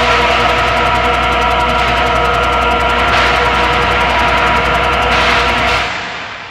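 Droning, atmospheric synthesizer music: a sustained chord of steady held tones under a dense noisy wash, beginning to fade out at the very end.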